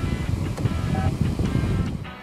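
Background music with a heavy low end, laid over the edit.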